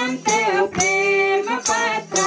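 Women singing a devotional hymn (bhajan) in unison, with a tambourine and hand claps marking the beat.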